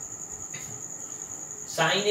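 A cricket's steady, high-pitched trill, continuous and unbroken.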